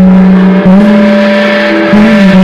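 Live band playing loud, with long sustained distorted notes that step up in pitch about half a second in and shift again near the end.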